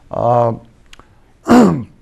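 A man's voice in a pause of speech: a short vocal hesitation sound, then about a second and a half in a throat-clearing sound with a steeply falling pitch.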